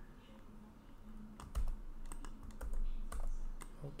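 Typing on a computer keyboard: an irregular run of short key clicks, starting about a second in.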